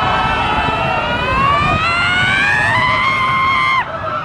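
Riders screaming on a roller coaster: one long scream that climbs steadily in pitch and cuts off abruptly near the end, over the steady rumble of the moving train.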